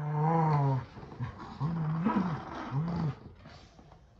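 Dog play-growling in a tug of war over a plush toy: three growls, the middle one rising briefly in pitch, dying away near the end.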